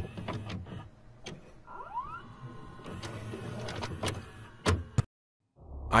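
Videocassette recorder mechanism clicking and whirring as a VHS tape loads and starts to play, with a rising motor whine about two seconds in and a couple of sharp clicks near the end.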